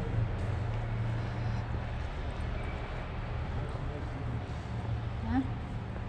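Steady low engine rumble of military vehicles running outside, heard from inside the building, with a brief faint voice about five seconds in.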